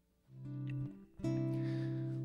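Acoustic guitar strummed twice. One chord comes about a third of a second in and fades, and a second comes just past a second in and is left ringing.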